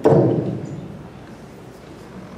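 Handling noise from a handheld microphone as it is passed from one person to another: a brief loud bump at the start that dies away within half a second, then low room noise with a few faint clicks.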